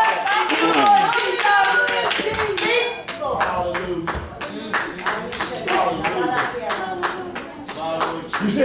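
Congregation clapping hands in a steady beat, about two to three claps a second and clearest from about three seconds in, with voices calling out over it.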